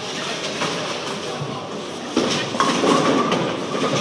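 Bowling ball rolling down the wooden lane with a steady rumble, then hitting the pins about two seconds in, followed by the clatter of falling pins.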